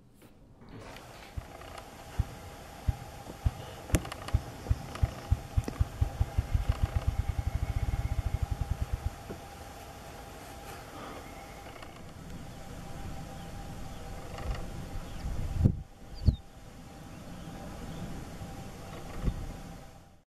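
Ruffed grouse drumming: low wing-beat thumps that start slow and speed up into a fast whir, lasting about seven seconds. Two separate low thumps follow later.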